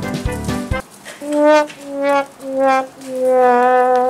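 Sad-trombone comedy sound effect: four slowly falling brass notes, the last one held long, the stock 'wah-wah-wah-waaah' of comic failure. Upbeat background music cuts off just before it, about a second in.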